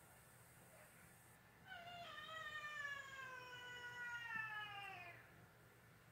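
A house cat giving one long, drawn-out yowl that starts about two seconds in, lasts about three and a half seconds and slowly falls in pitch.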